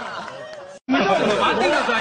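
Speech only: quieter overlapping talk cuts off abruptly, followed by a split second of silence. Then a man's louder voice begins talking.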